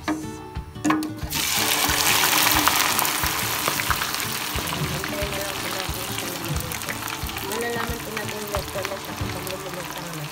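Raw-cut potato strips going into hot oil in a deep fryer: a sudden loud sizzle breaks out about a second in, then settles into a steady, slowly fading bubbling sizzle.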